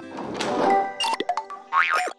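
Cartoon sound effects over background music: a swelling whoosh, then a few quick knocks, and a springy boing near the end.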